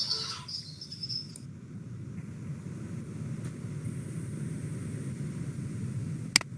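Steady low background noise from an open microphone, with a short burst of hiss in the first second or so.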